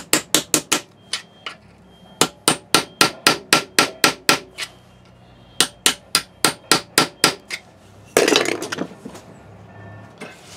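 Hammer striking an old flathead screwdriver used as a chisel, knocking out the steel between drill holes to cut the tang slot in a 6 mm mild steel guard held in a vise. It comes as quick runs of metal-on-metal blows, about five a second, with short pauses between the runs. A brief scraping noise follows near the end.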